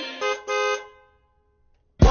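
A car horn sounding twice in the song's break, a short honk and then a longer one, fading out about a second in, followed by silence.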